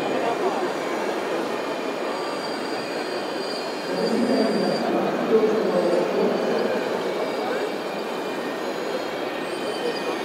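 Steady electric whine of RC model hydraulic excavators working, thin high tones over a dense murmur, with crowd chatter beneath.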